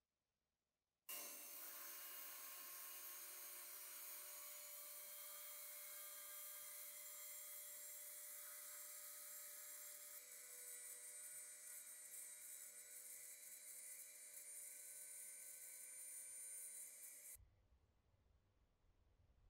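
Handheld rotary tool with a small sanding drum running at high speed, sanding the edge of a moulded vegetable-tanned leather case. It starts about a second in as a steady whine, its pitch shifts about halfway through, and it stops shortly before the end.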